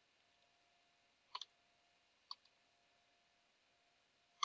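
A few isolated computer keyboard keystrokes over near silence: a quick pair about a second and a half in, then a single click near the middle with a fainter one just after.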